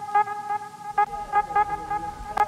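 A steady, held horn-like tone with several overtones, with short blips over it every fraction of a second.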